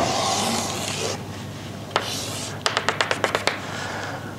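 Chalk on a blackboard: a hissing scrape over the first second, a sharp tap and short scrape about two seconds in, then a quick run of about ten sharp taps near the end.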